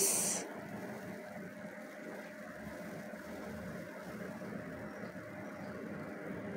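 Faint, steady sizzle of a thick ground spice paste of shallot, garlic, candlenut and keluak being sautéed in oil in a wok and stirred with a spatula, with a faint steady hum underneath.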